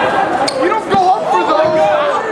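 A dodgeball hitting hard about half a second in, and a duller thump about a second in, among players' shouting voices in a gymnasium.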